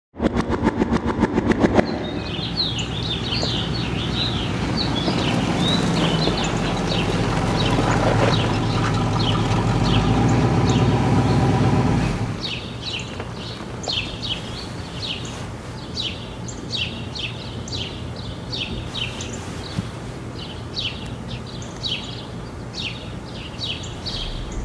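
Birds chirping repeatedly over a low steady rumble that swells and then stops suddenly about halfway through; the chirps continue over a quieter background afterwards. The first two seconds hold a fast, even ticking.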